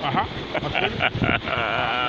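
Livestock bleating, with a long wavering bleat about halfway through.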